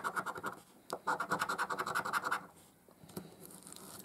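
A coin scraping the scratch-off coating of a lottery scratch card in rapid, even back-and-forth strokes, about nine a second. There is a short run right at the start and a longer one from about a second in to about two and a half seconds, then only faint scraping.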